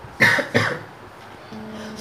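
A man coughs twice in quick succession, then gives a faint steady hum near the end before speaking again.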